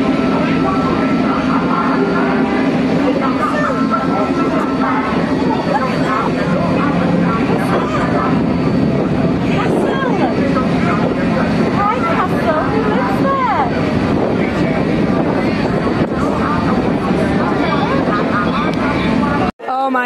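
Boat engine running steadily under way: a continuous low drone with a rushing noise over it, and voices faintly in the background. It cuts off suddenly just before the end.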